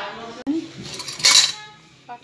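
Metal dressing instruments clattering against a stainless-steel tray, loudest in one bright clatter a little past a second in, with a sharp click just before it and voices in the background.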